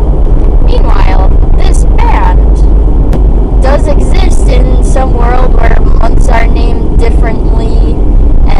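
Steady low rumble of a car driving, heard inside the cabin, under continuous talking.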